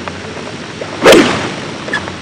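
A golfer's full swing at a ball from the fairway: one sharp strike of the club on the ball and turf about halfway through, fading quickly.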